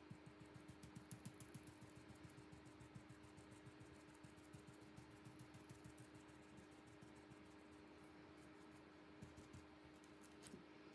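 Faint, rapid tapping of a stencil brush dabbing paint through a plastic stripe stencil, several taps a second, thinning out after the middle, over a steady low hum.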